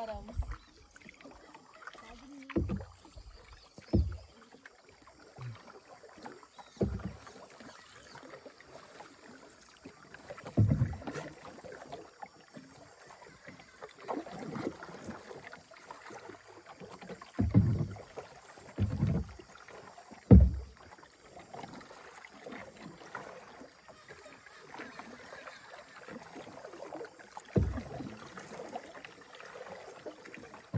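Wooden canoe being paddled across calm water: paddle strokes and water moving along the hull, with irregular low thumps now and then, the loudest about twenty seconds in.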